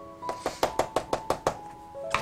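A quick run of about ten light, sharp taps on the work surface, roughly eight a second, stopping about a second and a half in, over soft background music.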